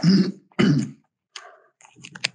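A person clearing their throat: two short, rough bursts in quick succession in the first second, followed by a few faint clicks.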